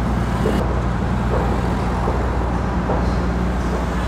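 Road traffic passing close by: motor vehicles' engines making a steady low rumble.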